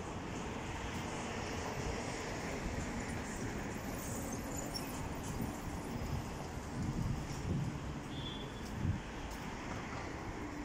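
Busy city street ambience: steady traffic noise from a main avenue, with a few short louder low swells in the second half.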